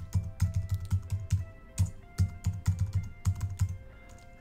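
Computer keyboard being typed on: a quick, irregular run of key clicks, about five a second, with a couple of short pauses. Faint background music plays under it.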